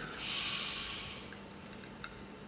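A man breathing in through his nose close to a microphone: one soft breath of about a second that fades away.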